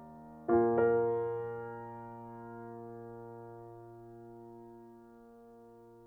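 Background piano music: a chord struck about half a second in, with a second strike just after, left to ring and fade slowly.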